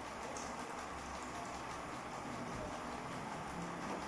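Steady background hiss, even and unbroken, with no speech.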